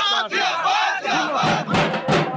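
A crowd shouting together; about a second in, large barrel drums beaten with sticks come in with rapid strokes.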